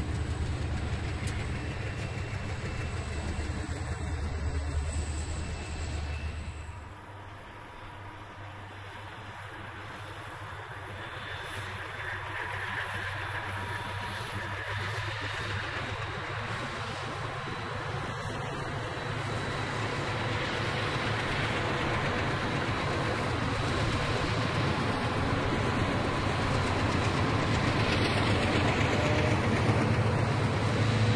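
Rio Grande diesel freight locomotives passing: a low, steady diesel engine rumble from a passing train, then about seven seconds in a cut to another train whose engines and rolling wheels grow steadily louder as it approaches and passes close by.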